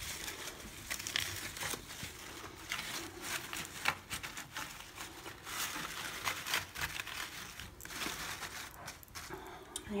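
Artificial flower stems and leaves rustling and crinkling in irregular bursts with small crackles as they are tucked and adjusted by hand in a floral arrangement.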